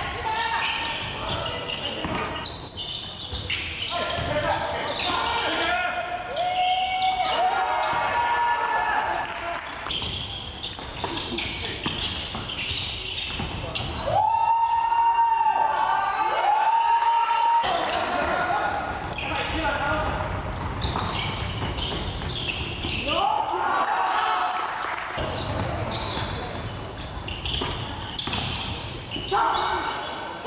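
Live basketball game sounds in a large gym: a ball bouncing on the hardwood court, with players' and spectators' voices echoing around the hall. About halfway through, two long held tones sound back to back and are the loudest part.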